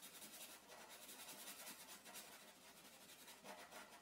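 Faint scratching of a black felt-tip marker on paper, in quick repeated strokes as an area is coloured in solid black.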